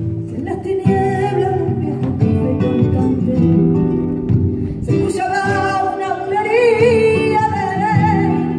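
Two flamenco guitars playing together while a woman sings a wavering, ornamented flamenco line over them. The voice grows stronger from about five seconds in.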